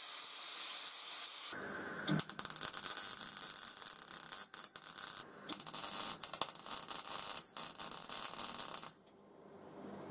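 A MIG welder crackling and sizzling while welding a steel pipe wheel onto the body, in several short runs with brief breaks, stopping abruptly about nine seconds in. A steady hiss comes first, for about a second and a half.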